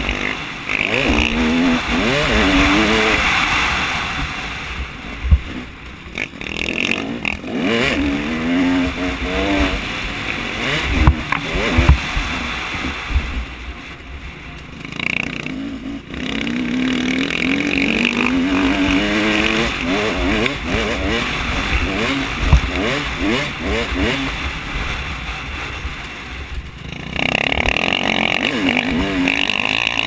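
Motocross bike engine revving hard, its pitch climbing again and again as it shifts up through the gears, then dropping as the throttle is eased for corners. Wind rushes across the helmet-mounted microphone, and there are a few sharp thuds as the bike hits bumps.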